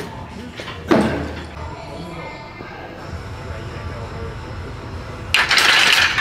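A loaded barbell clanks once, sharply, about a second in, with the clank echoing in a large weight room. Near the end comes a loud rushing noise lasting under a second.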